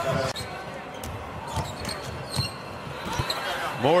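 Broadcast court sound of a basketball game: a few scattered ball bounces on the hardwood floor over a low, steady background of the arena.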